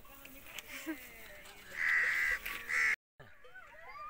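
A bird calls twice, about two seconds in: a longer call, then a shorter one. Faint voices sit underneath, and the sound cuts out briefly near the end.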